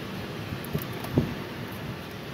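Steady low background noise of a car waiting with its engine running, with a faint short knock a little after a second in.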